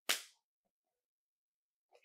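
A single sharp slap of hands, a clap made while laughing, just after the start, followed by near silence.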